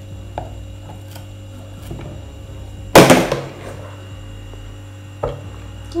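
Light clicks of a knife poking among garlic cloves in a plastic food-chopper bowl, then a single loud clatter about halfway through and a smaller knock near the end, over a steady electrical hum.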